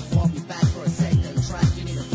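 Dance music from a club DJ set, with quick notes that fall sharply in pitch, about four or five a second, over a held low bass tone.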